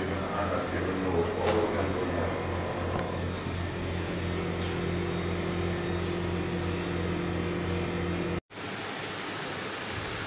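Steady low mechanical hum under a wash of noise, with a second, higher hum joining a few seconds in. It cuts off abruptly near the end, where a different, quieter background takes over.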